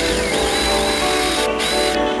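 Background music, with the high whine of a cordless drill's motor as it drives a long screw into a wooden beam. The whine stops briefly about a second and a half in, then starts again.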